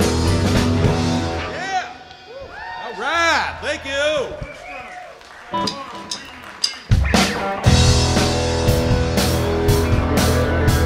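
Live seven-piece band playing: the full band with drums drops away about a second and a half in, leaving a lone melodic line of bending, sliding notes, then the whole band comes back in with drums about seven seconds in.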